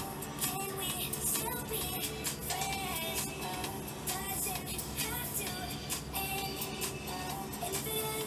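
Electronic pop song playing: sung vocals over a steady beat.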